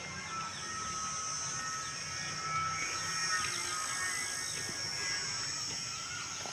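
Birds chirping in many short, quick calls over a steady high-pitched background hiss.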